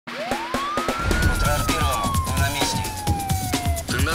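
Title-sequence sound of a TV emergency-news programme: a single siren wail sweeps up over about a second, then glides slowly down until it stops near the end. Under it are a pounding electronic music beat with heavy bass and short fragments of voices.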